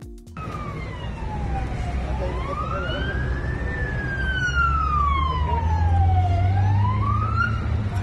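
Emergency-vehicle siren in a slow wail: one tone falling and rising in pitch, a full cycle about every four to five seconds. A low rumble runs underneath, louder in the second half.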